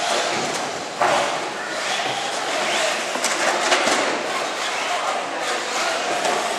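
Electric radio-controlled short-course trucks (Traxxas Slash 4x4) driving on an indoor off-road track: a continuous whine of motors and tyres, rising and falling in pitch, with a few sharp knocks.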